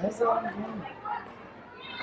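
A short wordless vocal sound, held and then falling in pitch, over quieter background chatter.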